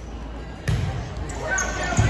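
A volleyball served: one sharp slap of hand on ball about two-thirds of a second in, echoing in the gym.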